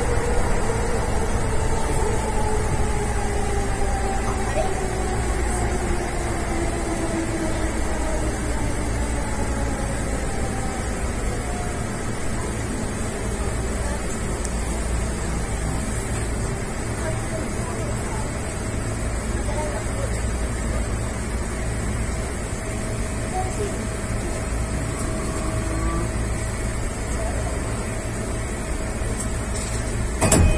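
E233-5000 series electric train's traction motors whining down in pitch over the first dozen seconds as it brakes into a station, over a steady rumble from the running gear, then a steady hum once it has slowed right down.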